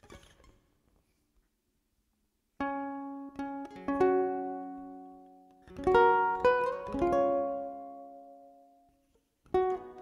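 Ukulele played fingerstyle: a slow melody of plucked notes and chords starting about two and a half seconds in, each phrase left ringing and fading, with a brief pause near the end before the next phrase begins.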